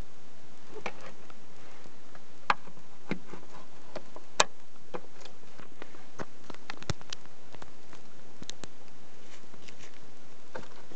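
Scattered, irregular light clicks and taps over a steady hiss: handling noise from a hand holding a clamp meter, with two sharper clicks a couple of seconds apart early on. The starter is not running.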